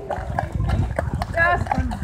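A horse's hooves clip-clopping at a walk on a wet paved path, irregular hoof falls over a low rumble. A person's voice is heard briefly about one and a half seconds in.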